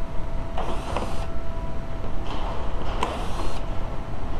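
Small power driver fitted with a T25 Torx bit spinning in two short bursts, the second longer, as it works the underbody screws, over a steady low hum.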